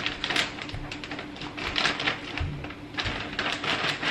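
Uncooked medium-grain rice pouring from a plastic bag into a plastic storage bin: a dry rattle of grains hitting the bin, coming in several uneven spurts.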